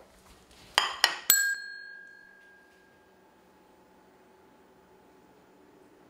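Two sharp clacks, then a ding from a desk service bell that rings out clearly and fades over about a second and a half.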